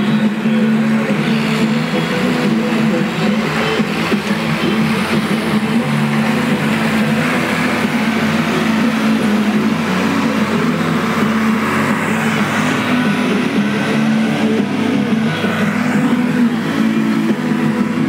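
John Deere 4020 six-cylinder tractor engine running hard under full load as it drags a weight-transfer sled, holding a steady, loud pitch.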